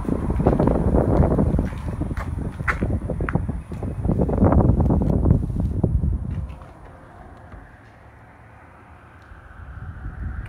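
Wind buffeting the microphone in two long gusts, then dying down to a quieter hiss about six and a half seconds in, with a few faint clicks scattered through.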